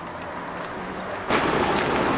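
Steady outdoor background noise that jumps sharply louder just over a second in and holds there.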